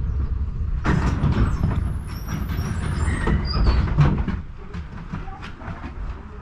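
KTM-19 (71-619KT) tram running along its track, heard from inside the car: a steady low rumble, with a run of clattering knocks from the wheels and rails that starts about a second in and eases off after about four seconds.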